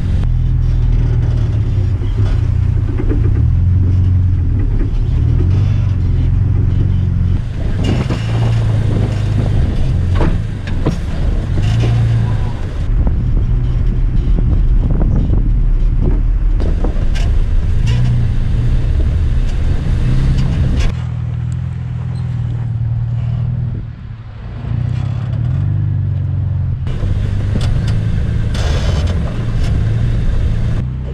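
Off-road truck's engine running at a low, steady crawl, with tires crunching and knocking over rocks and dirt, heard through a camera mounted low on the outside of the vehicle beside the wheel.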